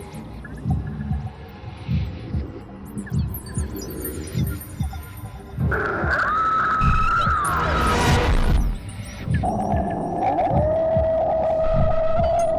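Suspense film score: a steady low heartbeat-like pulse, about three beats every two seconds, over a hum. About six seconds in a high held tone comes in for two seconds, and from about nine and a half seconds a lower held tone sounds, sliding down near the end.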